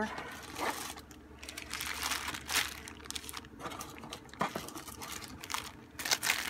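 Small clear plastic zip-lock bags of beads crinkling as they are handled and shuffled about, with irregular sharp crackles.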